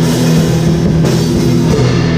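Metal band playing live: distorted electric guitars holding heavy low chords over a drum kit with cymbals, recorded loud in a small room.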